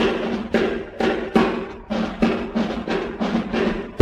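Solo drum break by a swing-band drummer on a 1941 78 rpm record: separate drum strokes, about two or three a second, with no band or voice over them.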